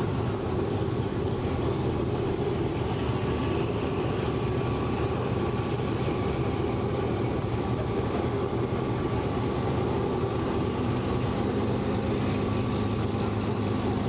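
Drag-race street cars idling in the staging lanes, a steady low engine rumble with no revving.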